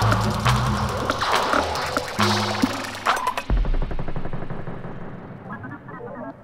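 Experimental techno track with dense electronic sounds over low, held synth bass tones. About three and a half seconds in, a deep bass hit lands, then the highs cut out and the track thins and fades down.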